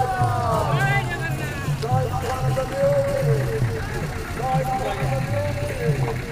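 Singing with music and a steady low beat, over vehicles moving slowly.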